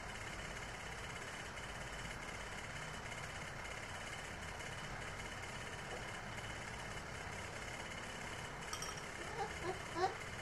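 Steady whir of a standing electric fan, with a couple of light clinks of a spoon in a ceramic bowl near the end.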